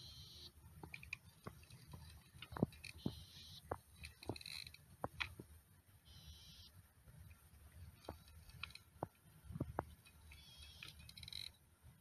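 A child's spincast reel being cranked as a hooked fish is brought in close on light line: faint scattered clicks and several short raspy whirring bursts, over a low rumble of wind on the microphone.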